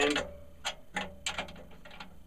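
Two drum keys turning snare drum tension rods by half turns on opposite lugs, making a few light, irregular metal clicks.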